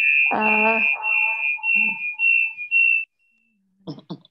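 Audio feedback in a video call: a steady, loud, high-pitched ring with a voice echoing beneath it. The ring cuts off suddenly about three seconds in. The host suspects a participant's unmuted microphone is part of the cause.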